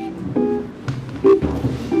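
Small jazz group playing, with plucked double bass notes and piano.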